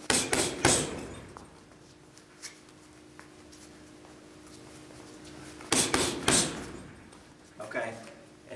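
A boxer throwing a three-punch combination twice, with a quick, sharp breath forced out on each punch: three bursts in under a second at the start, and three more about six seconds in.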